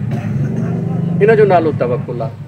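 A man speaking into a microphone, starting just over a second in, over a steady low hum that fades out near the end.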